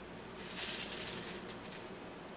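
Granulated shot buffer being poured into a shotshell hull: a hissing, trickling rattle for about a second and a half, with a few sharper clicks near the end.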